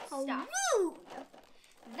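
A girl's drawn-out wordless exclamation that rises and falls in pitch in the first second, followed by faint crinkling of packaging being handled.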